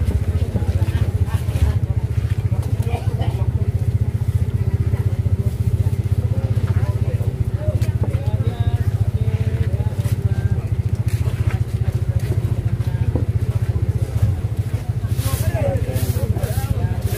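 A steady low motor rumble, like an engine idling close by, runs throughout under faint background voices. Near the end come a few sharp knocks of a large knife chopping tuna on a wooden block.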